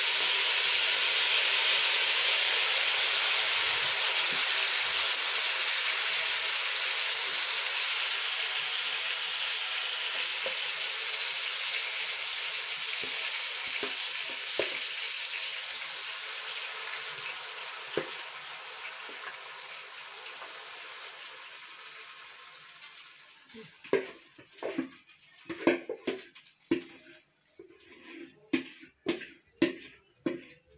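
Yogurt-marinated chicken pieces sizzling in hot oil in a stainless-steel wok. The sizzle is loud at first and fades slowly. Near the end comes a run of knocks and scrapes against the steel pan as the chicken is stirred.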